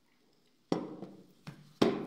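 Sharp knocks of a drinking glass being put down and handled on a hard surface: one a little past half a second in, then two close together near the end, the last the loudest.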